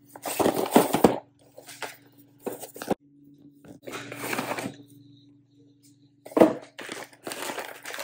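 A cardboard snack box being torn open and a foil pouch pulled out of it, with crinkling and tearing in irregular bursts.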